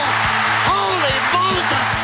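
Theme music with a steady beat, under a match crowd cheering and a few shouts following a score, with the cheering fading near the end.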